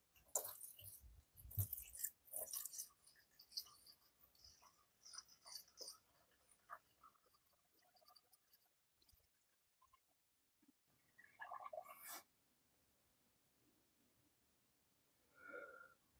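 Coolant pouring from a plastic jug into a tractor's cooling-system filler: faint, scattered glugs and trickles, mostly near silence, with a few soft bursts in the first three seconds and another about twelve seconds in.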